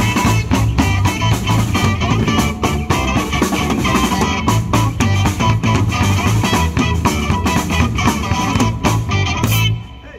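Live rock and roll band playing an instrumental passage on electric guitar, electric bass and drum kit, stopping abruptly near the end.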